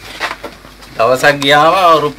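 A man's voice: a quieter first second, then a drawn-out, voiced syllable starting about a second in.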